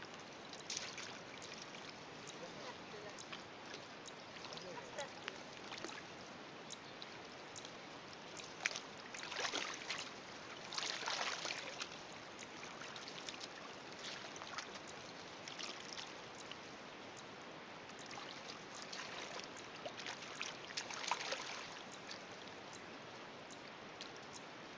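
Shallow pond water splashing and sloshing as hands and legs churn through it while feeling for fish among the weeds, over a steady hiss. The splashing comes in two louder spells, about nine seconds in and again around twenty seconds.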